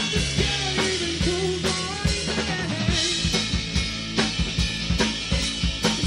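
Indie rock band playing: a drum kit driving a steady beat of kick and snare hits, with bass guitar and electric guitar.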